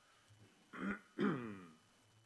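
A man clearing his throat at a desk microphone: a short sound, then a longer, louder one that falls in pitch, starting about a second in.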